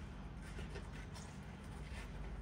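Faint handling noise from a product pack being fumbled while someone tries to open it: a few soft, scattered clicks and rustles over a low steady hum.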